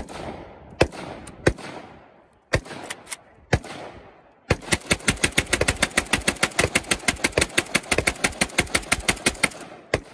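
AK-pattern rifle firing: five single shots about a second apart, then a long rapid string of shots, roughly eight to ten a second, for about five seconds, each shot trailed by its echo.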